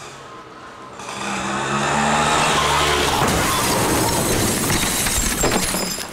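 Auto-rickshaw engine running and growing loud, then from about halfway a long noisy crash with scraping and clattering as the auto-rickshaw goes off the road into the dirt.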